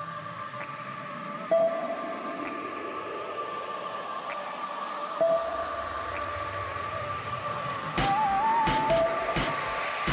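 Music of held, steady tones; a drum beat comes in about eight seconds in.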